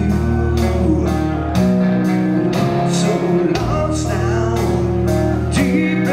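Live rock band playing: electric guitar, bass and drums, with cymbal strikes about twice a second over sustained bass notes, and a male lead vocal singing.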